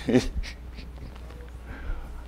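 A pause between spoken lines, filled by a steady low hum from the sound system and faint room noise, with a brief vocal sound right at the start.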